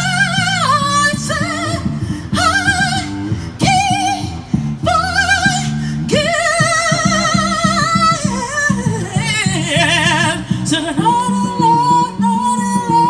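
Live street band music: a singer holding long notes with wide vibrato over drum kit and keyboard accompaniment.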